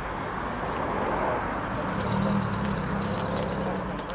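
Vintage saloon car's engine running as the car moves off slowly, its low engine note coming up about halfway through.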